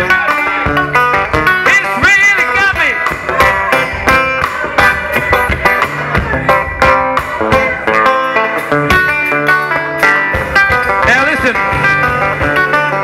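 Live bush band playing an instrumental passage with a steady drum beat, with electric guitar, banjo, acoustic guitar and fiddle.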